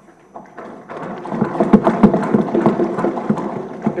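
Assembly members thumping their desks in approval: a rapid, irregular clatter of knocks. It builds over the first second and stays loud until the speech picks up again.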